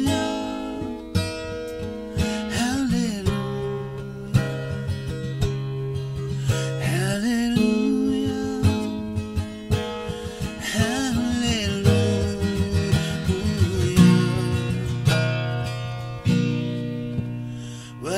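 Steel-string acoustic guitar strummed and picked through an instrumental passage between verses, with a few brief wordless vocal phrases from the player.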